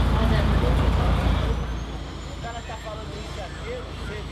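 Street ambience: a heavy low traffic rumble, like a passing bus or truck, that eases off about a second and a half in, leaving scattered voices.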